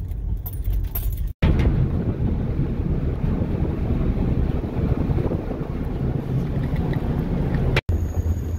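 Low rumble inside a car as it drives onto a car ferry, then, after a cut about a second and a half in, wind buffeting the microphone on the ferry's open deck over a steady low rumble.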